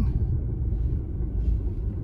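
Steady low rumble of a car driving slowly along a town road, heard from inside the cabin: engine and tyre noise.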